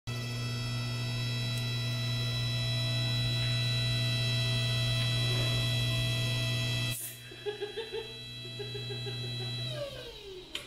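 Hydraulic shop press running, a steady electric-motor hum with a buzzy edge as the ram comes down onto an orange. About seven seconds in there is a click and the hum drops to a quieter, uneven level with small irregular spikes; near the end the motor winds down, its pitch falling.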